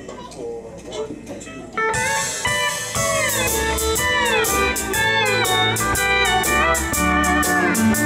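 A country band kicks off a song about two seconds in: pedal steel guitar plays a gliding, bending intro, and about a second later drums with a steady beat, bass and electric guitar join in.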